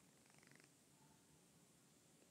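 Near silence: room tone in a pause between spoken sentences, with a faint, brief rough sound near the start.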